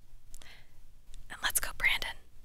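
A woman whispering a few words close to a studio microphone, heard as short breathy, hissing fragments with hardly any voiced tone, the loudest near the end.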